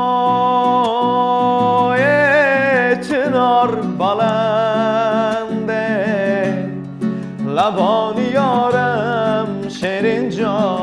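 A male voice sings long, held notes with vibrato, accompanying himself on a nylon-string classical guitar that is strummed and plucked underneath. He takes a short breath about seven seconds in.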